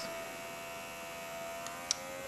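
Small brushed DC motor running steadily on pulse-width-modulated power from a 556-timer driver, a hum made of several steady tones. One short click near the end.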